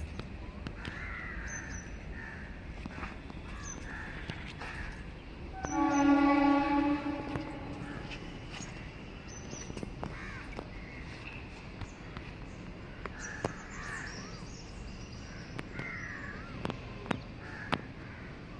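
Crows cawing on and off, with small birds chirping high. About six seconds in, a horn sounds one steady note for about two seconds, louder than anything else.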